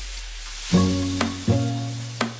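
Background instrumental music: quiet at first, then low sustained notes enter about three-quarters of a second in and again about a second and a half in, with a short click between them.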